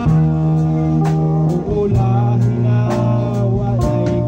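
Worship music with guitar and long-held bass notes that step down in pitch about halfway through, over a steady beat of about two drum hits a second.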